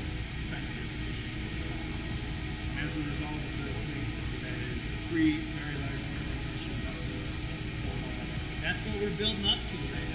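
A man talking over the steady low drone of brewhouse equipment.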